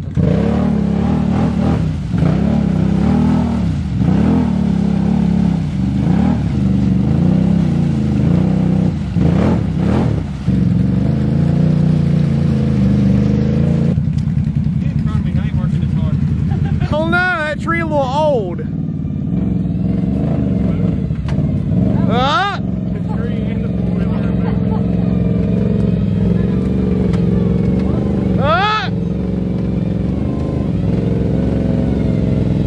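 Can-Am Outlander ATV engine revving up and down again and again while the quad is bogged in a deep mud rut, then running steadier at lower revs in the second half. Short high wavering cries cut over it about halfway through and again near the end.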